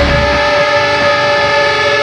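Heavy metal song at a break: the drums and low end drop out about half a second in, leaving a sustained distorted guitar chord ringing steadily.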